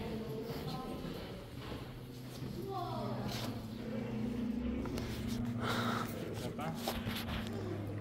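Indistinct voices of people talking, in short snatches, over a low steady hum.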